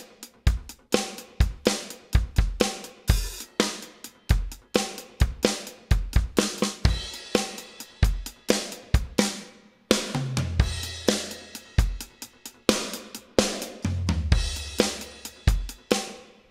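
Addictive Drums 2 'Black Velvet' sampled drum kit played live from a MIDI keyboard: a steady groove of kick, snare and hi-hat with crash cymbals. Deeper ringing drum hits come in about ten seconds in and again near the end.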